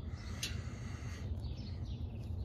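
Quiet outdoor background: a steady low rumble, with a faint short chirp about half a second in.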